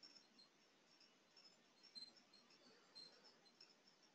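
Near silence: faint room hiss with a few scattered faint high ticks.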